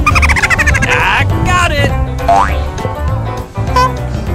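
Upbeat background music with a steady beat, with a falling sliding sound in the first second and a rising slide about two seconds in, like cartoon sound effects.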